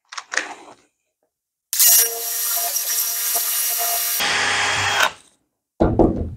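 Cordless DeWalt drill with an 8 mm bit boring a hole into a small wooden block. The motor runs steadily for about two and a half seconds, turns rougher and louder for about its last second, then stops. A short knock comes near the end.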